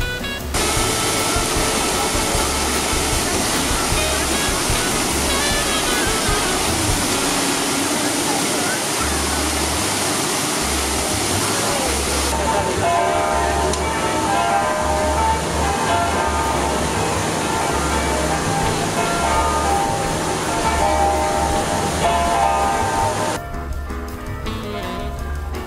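Large multi-jet fountain splashing steadily into its basin, a loud even rush of falling water, with background music playing under it. The water sound starts suddenly just after the start and cuts off near the end.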